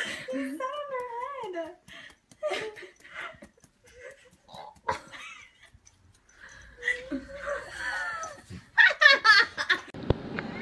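Wavering, pitched vocal sounds that rise and fall, then loud bursts of laughter near the end.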